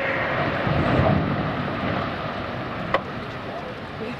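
Low rumble of a tidewater glacier calving, ice breaking from the face and falling into the sea, heard over wind on the microphone. The rumble is heaviest in the first couple of seconds and then eases, with one sharp click about three seconds in.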